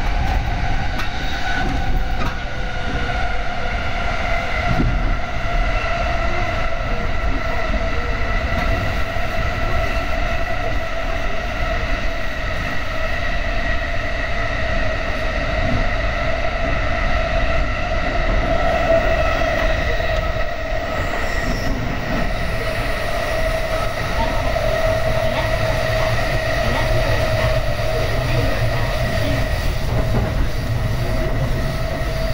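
Commuter train running at steady speed, heard from inside the car: a constant low rumble under a steady whine held on several pitches. The train is in a tunnel, coming out into the open near the end.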